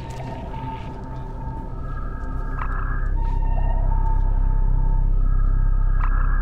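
Film sound design of underwater sonar noise from a nearby vessel heard through a submarine's sonar. A deep low drone swells louder partway through, under high, whale-like tones that take turns between two pitches, each held for a second or two.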